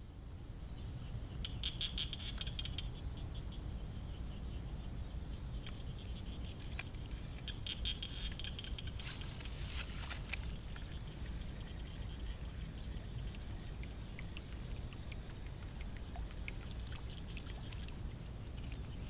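Small wooden topwater frog lure being worked across a pond's surface, splashing and gurgling as it is pulled. Short bursts of rapid clicking come about two and eight seconds in, and a sharper splash about nine seconds in.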